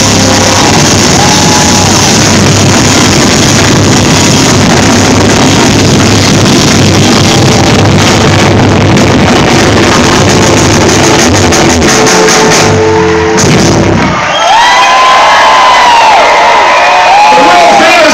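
A live band playing loud with drums and guitar, the song ending about fourteen seconds in. Shouting and cheering from the crowd follow.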